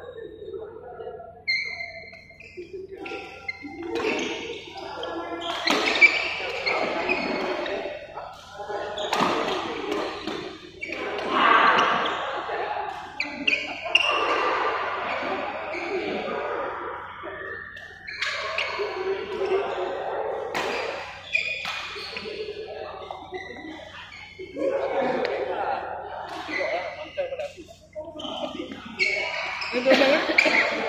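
Badminton rally: sharp, scattered hits of rackets on a shuttlecock and players' footsteps on the court floor, with people's voices throughout.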